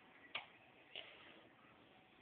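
Near silence: room tone, with two faint short clicks about half a second apart in the first second.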